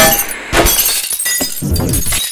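Glass-shattering sound effect: a sharp crash at the start and a second one about half a second in, each followed by a spray of tinkling shards.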